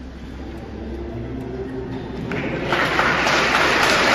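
Church congregation applauding, breaking out about two and a half seconds in after a quiet murmur of the large hall, and growing louder.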